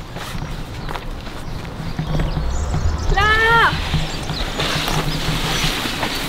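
Footsteps on grass and the rustle of fir branches as children push into a tree, with a brief rising-and-falling exclamation from a girl about three seconds in.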